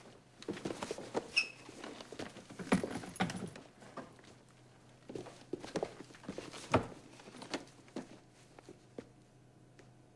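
Footsteps and light knocks and shuffles of people moving in and out of an elevator car, uneven, with one sharper knock near the end, and a brief high tone about a second and a half in.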